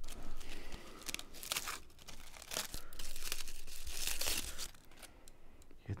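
Crinkly wrapping being torn open and rustled, a string of rough tearing and crackling sounds that are loudest from about three to four and a half seconds in and die down near the end.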